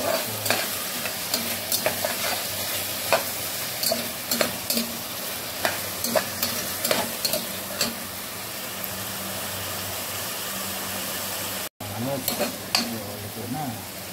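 Onions, tomatoes and garlic sizzling in oil in a pot, with a slotted spatula scraping and knocking against the pot as they are stirred. The knocks come irregularly, ease off for a few seconds, and the sound cuts out briefly near the end before the stirring resumes.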